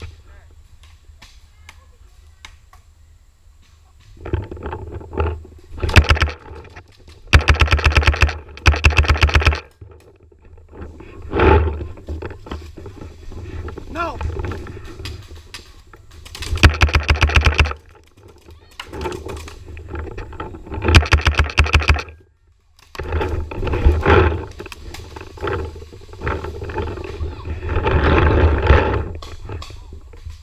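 Paintball markers firing rapid strings of shots: from about four seconds in, several loud bursts of quick, evenly spaced pops, with noisier stretches of movement and distant voices between them.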